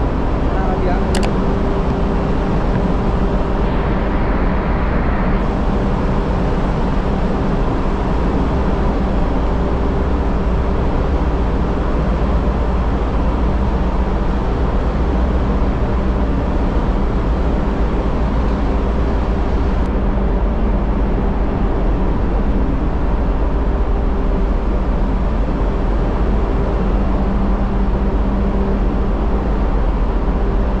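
Ship's running machinery heard inside the funnel casing: a loud, steady drone with a low rumble and several steady hums underneath, unchanging throughout.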